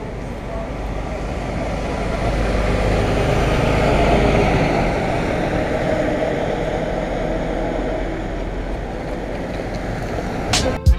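A motor vehicle going by close, its engine and road noise swelling to a peak about four seconds in, then easing off.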